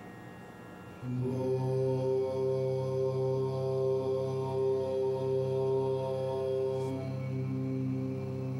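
A chanted mantra: one long note held steady on a single pitch for about six breath-long seconds, starting about a second in, with the next chanted note beginning near the end.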